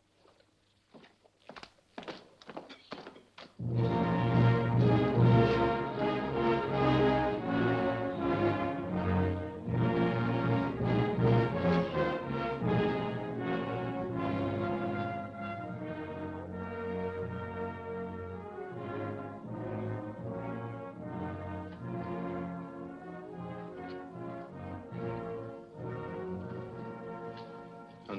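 Film score with brass, entering suddenly about three and a half seconds in, loudest at first and then settling lower. Before it, a few faint knocks.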